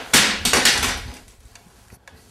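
Loud rustling and scraping handling noise from a sous vide immersion circulator being moved and rubbed right against the microphone, dying away after about a second.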